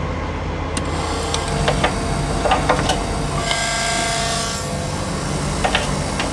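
Refueling a reefer trailer's tank at a diesel pump: scattered clicks and metal knocks from the pump switch and nozzle. About halfway through, a whine with a hiss rises for about a second. A steady low engine hum runs underneath.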